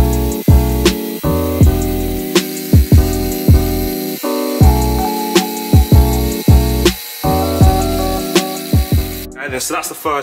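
Instrumental background music with a bass line and a steady drum beat. It stops about nine seconds in, when a man's voice begins.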